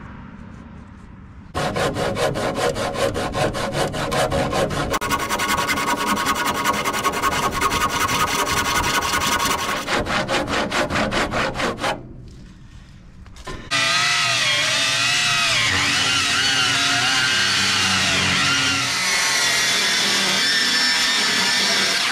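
A handsaw cutting a wooden board with quick, even back-and-forth strokes for about ten seconds. After a short pause, an electric circular saw runs and cuts for about eight seconds, its pitch wavering under the load.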